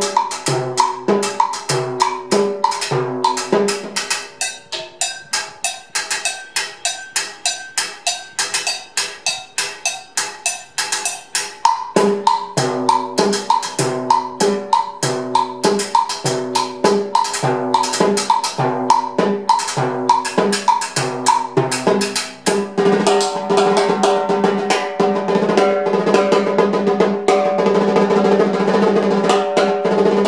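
Timbales played with sticks in a cumbia rhythm, drumhead strokes mixed with hits on a mounted cowbell and plastic block. From about four seconds in the drum strokes give way to a quick clicking pattern, the drums come back at about twelve seconds, and near the end the strokes pack into a dense run with the heads ringing continuously.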